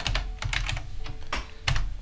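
Typing on a computer keyboard: about half a dozen separate, unhurried keystrokes.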